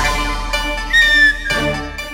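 Background music from the serial's score: held tones, with a short high tone about a second in that dips slightly in pitch.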